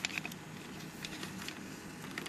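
Light clicks and ticks of small plastic toy parts handled in the fingers, with a few sharper clicks just at the start, over a faint steady low hum.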